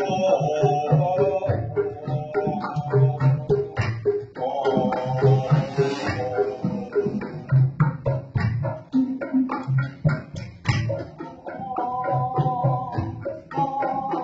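Sundanese karinding ensemble music: a bamboo tube zither (celempung) and kendang drums in a steady low repeating rhythm. At times a man's voice sings a held, wavering line over it.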